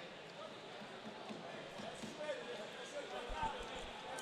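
Faint background of distant voices in a competition hall, with a few dull thuds about three and a half seconds in as the grapplers hit the mat during a sweep.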